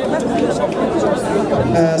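Speech only: a man talking into a bank of microphones, with other voices chattering over him.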